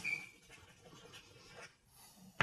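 Chalk scratching faintly on a blackboard in short strokes as a diagram is drawn.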